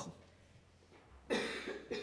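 A pause of near silence, then a single short, breathy cough a little over a second in, fading over about half a second.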